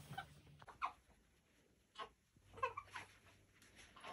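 A few faint, short, high vocal calls, several separate ones with a quick cluster about two and a half to three seconds in.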